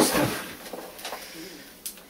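Dry moss-and-peat potting substrate being mixed by hand in a plastic tub. A loud rustle at the start fades over about half a second, followed by light crackles and a sharp tick near the end.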